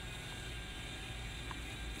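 Faint steady hum of a DJI Mavic Mini's propellers as the drone climbs overhead, over a low rumble.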